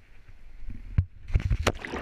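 Low rumble, then a sharp knock about a second in, followed by loud rushing, splashing water as the action camera plunges under the river's surface into churning bubbles.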